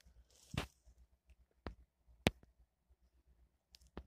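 A quiet stretch with a handful of faint, sharp clicks, the loudest a little past two seconds in.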